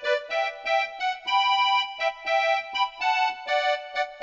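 Electronic keyboard played by hand: a vallenato melody of short, repeated chords in a bouncy rhythm, about three a second, with one longer held note a little past the first second.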